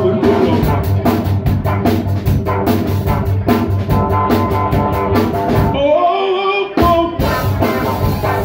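A live two-piece band plays: an electric guitar and a drum kit keep a steady beat, and a man's voice sings over them. About six seconds in, the drums and bass drop out for under a second, then come back in with a hit.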